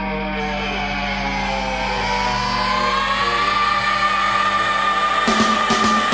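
Sleaze rock music: a long held note slides up in pitch and then holds, and drum hits come in about five seconds in.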